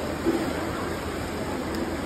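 Indoor swimming-pool hall ambience: a steady wash of water noise with faint voices in the echoing hall.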